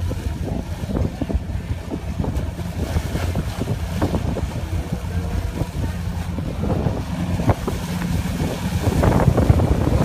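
A boat's engine rumbling steadily, with wind buffeting the microphone and scattered short knocks and clatters, thicker near the end.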